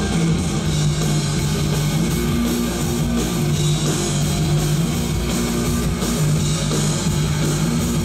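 Live rock band playing an instrumental passage on electric bass guitar, guitar and drum kit, with no vocals. Held low notes change pitch every second or so over a steady loud mix.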